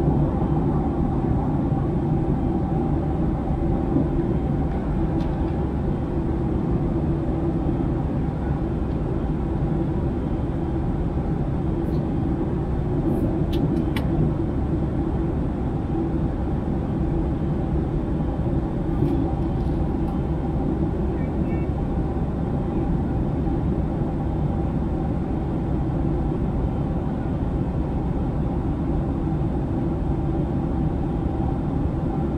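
Steady airliner cabin drone at cruise: engine and airflow rumble with a low hum. A few faint clicks fall about halfway through.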